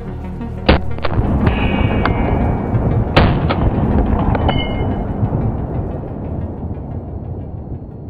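About seven sharp rifle shots from an AR-15-style rifle, fired irregularly over the first four and a half seconds, the loudest about one and three seconds in. Dramatic background music plays throughout and fades slowly toward the end.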